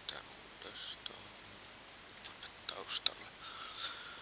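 A few soft mouse clicks close to a desk microphone, with faint breathing and mouth sounds between them.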